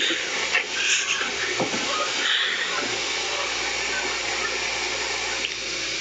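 Small handheld gas torch burning with a steady hiss while soldering silver earring parts.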